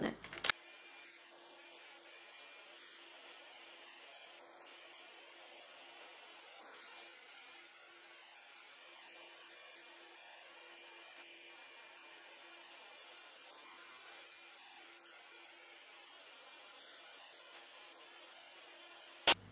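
A click, then a BaByliss Big Hair rotating hot air brush running, heard only faintly as a steady whir with a low hum.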